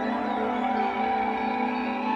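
Live band playing a droning, ambient instrumental passage: a steady low drone under sustained tones, with pitches that glide and waver up and down.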